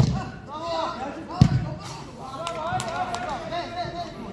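A football struck hard: one sharp thud about a second and a half in, with men shouting throughout.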